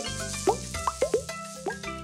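Cartoon plop sound effects for balls dropping into a box: about five quick, rising-pitched plops, over steady children's background music.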